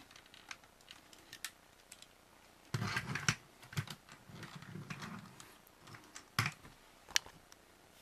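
Plastic parts of a Transformers Sentinel Prime toy figure clicking and knocking as they are handled and fitted together, with a denser clatter about three seconds in and a few sharp single clicks near the end.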